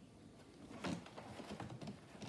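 Faint rustling and light tapping as the cat stirs in its cardboard scratcher box under a petting hand, with one sharper knock a little under a second in.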